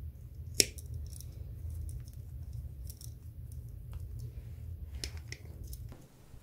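Revolving leather hole-punch pliers worked by hand: one sharp snap about half a second in as the punch closes, then scattered lighter clicks from the tool, over a steady low hum.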